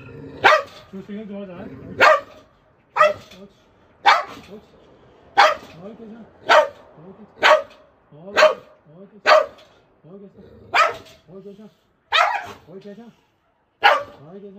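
A dog barking over and over, about a dozen loud, sharp barks roughly a second apart, with lower sounds between them.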